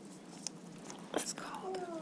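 Faint whispering in a quiet room, with a few small clicks and a brief soft sound about a second in.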